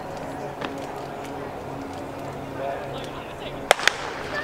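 Starter's pistol fired to start a race: two sharp cracks a split second apart near the end, over a low murmur of spectators.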